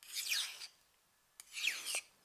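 Kitchen knife drawn edge-trailing along a steel honing rod twice: two light metal-on-metal scrapes of about half a second each, with a falling ring. There is a small click just before the second stroke. The strokes are an attempt to straighten a rolled edge.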